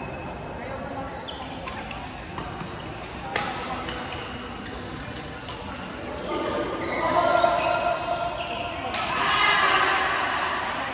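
Badminton rackets striking a shuttlecock, a few sharp hits at irregular intervals, the loudest about three and a half seconds in and near the end. Players' voices and chatter rise in the second half, echoing in a large sports hall.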